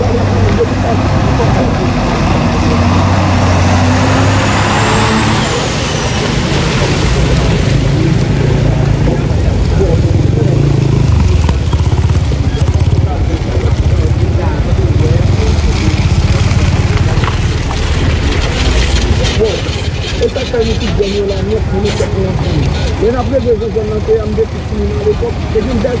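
Street ambience: a vehicle engine runs with a steady low rumble under the voices of people talking nearby, and a brief rising and falling whoosh about five seconds in.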